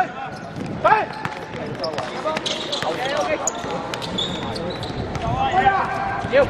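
Futsal ball being kicked and bouncing on a hard outdoor court, a series of sharp knocks, with players shouting to each other near the start and again near the end.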